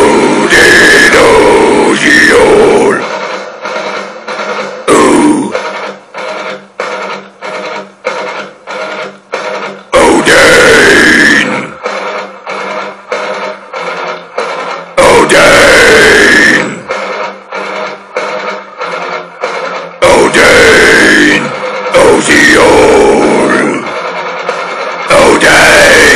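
Viking metal song with heavy guitars and drums playing a stop-start riff of short, evenly spaced chugs, broken about every five seconds by a loud harsh vocal phrase of a second or two.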